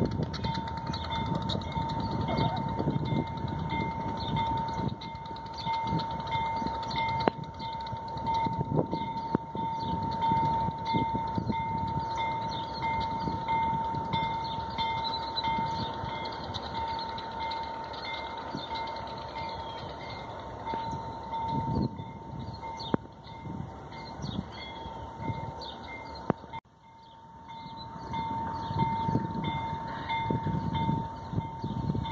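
Diesel locomotive and its train rumbling steadily as they move away along the line, with a steady high-pitched whine over the rumble.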